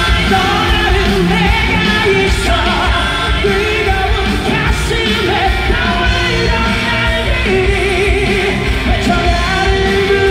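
A loud live song with a male singer, played over an arena sound system.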